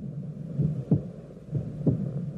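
Heartbeat as heard through a stethoscope: a low lub-dub thump about once a second, over a steady low hum.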